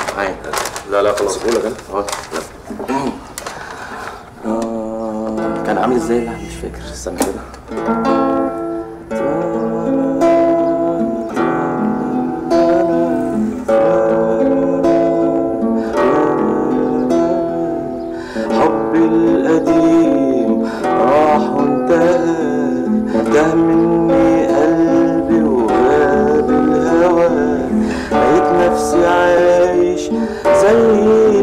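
A steel-less nylon-string acoustic guitar being played, with a man singing a slow song along with it. It starts a few seconds in and goes on through the rest.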